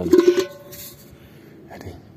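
A metal cooking pot knocked while being handled, a short clank at the start that rings on briefly with a few clear tones before fading, followed by quiet handling.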